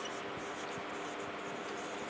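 A felt-tip marker writing a word on a whiteboard: faint strokes of the tip on the board, over a steady faint hum.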